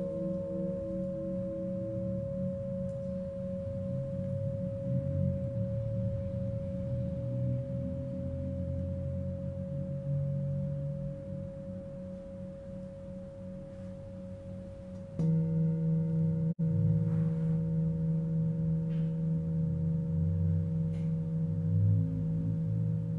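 Tibetan singing bowls ringing in several sustained tones, the low hum pulsing with beats and slowly fading. About fifteen seconds in, a bowl is struck again with a mallet, bringing a fresh, louder ring of several tones that the sound cuts out of for an instant soon after.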